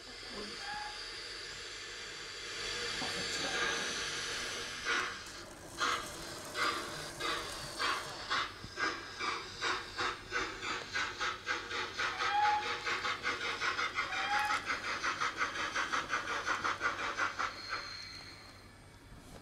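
Steam locomotive sound effects from the DCC sound decoder of a Bachmann Castle class model steam locomotive. A steady hiss of steam gives way, about five seconds in, to exhaust chuffs that start slowly and quicken to about four a second as the model pulls away, with a few brief squeaks along the way.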